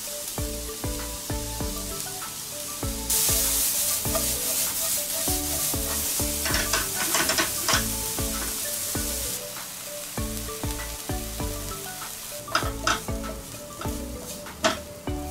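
Chopped onion sizzling in hot oil in a nonstick frying pan. The sizzle grows much louder about three seconds in and eases off again near the tenth second. A spoon clicks and scrapes against the pan as the onion is stirred.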